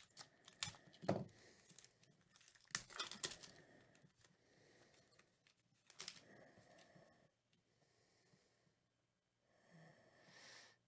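A foil trading-card pack wrapper being crinkled and torn open by hand: sharp crackles and tearing through the first few seconds, with another tear about six seconds in.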